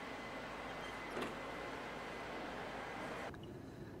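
Steady background hiss and hum of a room, with a faint thin high tone in the first second and a small click about a second in; near the end it drops to a quieter, duller hum.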